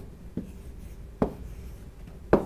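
Pen writing on the glass face of an interactive touchscreen whiteboard, with two short sharp taps of the pen tip on the screen, about half a second and just over a second in.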